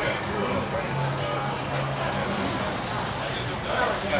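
Background voices of people talking, with music playing under them and low notes shifting every second or so.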